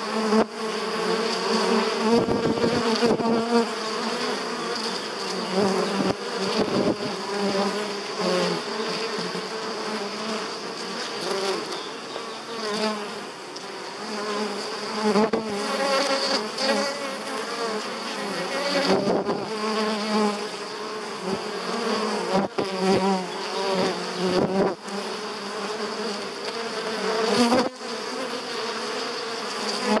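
Honeybees buzzing as they fly in and out of the hive entrance: many overlapping hums that rise and fall in pitch as single bees pass close by. A steady high-pitched tone runs underneath.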